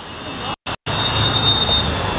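City street traffic noise with a steady high squeal lasting most of a second, broken near the start by two abrupt cuts to silence.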